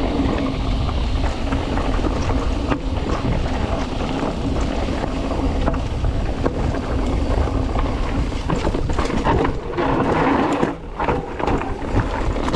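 Mountain bike riding fast down a dirt singletrack: wind buffeting the camera microphone over the rumble of tyres on dirt, with scattered knocks and rattles from the bike over the bumps.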